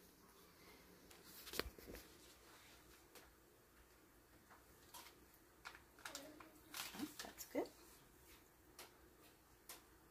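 Near silence: room tone, with a few faint knocks and rustles from food being handled on the counter, and a brief faint voice about six to eight seconds in.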